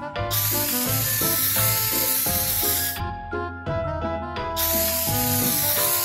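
Aerosol spray-paint hiss as a cartoon sound effect, in two long sprays: the first stops about halfway through, and the second starts again about a second and a half later. Cheerful background music runs underneath.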